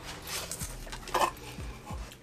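Handling of a cardboard subscription box and its contents: rustling and scuffing of card and packaging, with a few light clinks of small cosmetic bottles.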